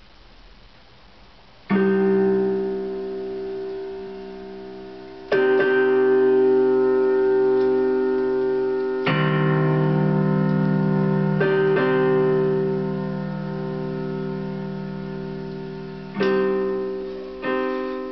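Casio electronic keyboard on a piano sound playing a slow ballad intro: after a near-quiet first two seconds, five chords are struck a few seconds apart, each held and fading away.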